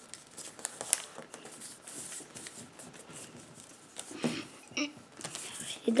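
A sheet of origami paper being handled and folded on a wooden table: soft rustling and crinkling with small clicks and taps, and one sharper click about a second in.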